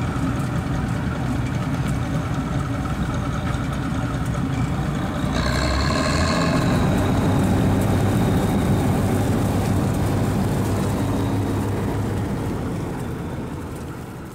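Bizon combine harvester running steadily as it drives through the field, with a brief higher hiss about six seconds in; the sound fades out near the end.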